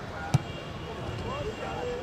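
A football kicked once, a single sharp thud about a third of a second in, with players' voices calling faintly across the pitch.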